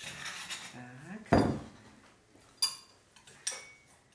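Metal utensil scraping garlic paste out of a stone mortar into a ceramic bowl, then one loud knock about a second and a half in as the heavy stone mortar is put down on the wooden board. Two sharp clinks of the metal spoon against the ceramic bowl follow.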